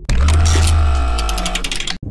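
Intro logo sting: a sudden deep bass hit that fades over about a second and a half, under ringing electronic tones and a quick run of glitchy ticks, cut off abruptly at the end.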